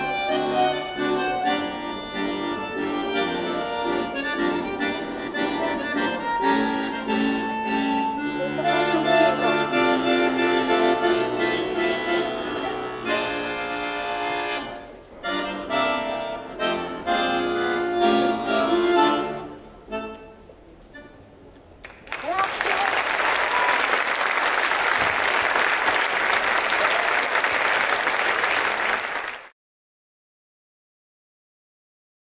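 Chromatic button accordion playing a solo tune, fading out about two-thirds of the way through. A few seconds later the audience applauds steadily, and the applause is cut off just before the end.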